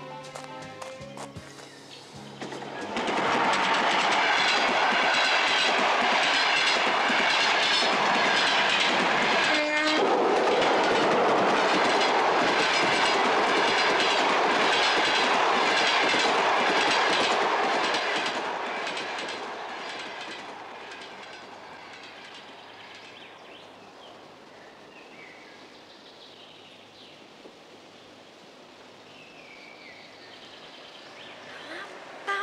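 A train passing close by, its wheels clattering over the rail joints: it comes in loud a couple of seconds in, with a brief falling tone about ten seconds in, then fades away as it recedes.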